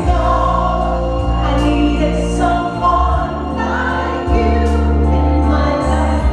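A woman singing a slow ballad live into a microphone over a musical accompaniment with a strong, steady bass line and sustained notes.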